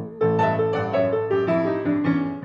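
Acoustic grand piano playing a blues fill between sung lines: a run of single notes stepping downward over sustained lower chords.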